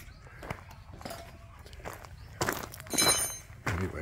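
Footsteps on a dirt road, with two louder knocks a little after halfway and a short high ringing tone about three seconds in.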